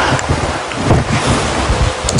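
Rough, wind-like noise on the microphone: a steady hiss with irregular low rumbles and thuds.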